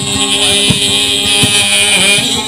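Amplified guitar playing a steady rhythm, a low stroke about every three quarters of a second over held notes, with a steady high-pitched tone running over it.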